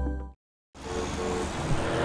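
Music ends about a third of a second in and, after a brief dead silence, steady road and tyre noise of a car driving fades in under soft, held music tones.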